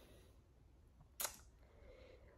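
Near-silent room tone with one short click a little over a second in.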